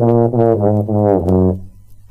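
Tuba blown: a held low note breaks into several short notes, then stops about one and a half seconds in.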